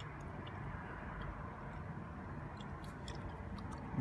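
Steady low background noise with a few faint, short clicks and rustles.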